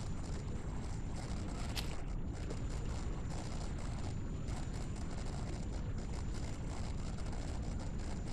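Steady low background noise of an indoor recording with a faint high whine, and a single faint click about two seconds in.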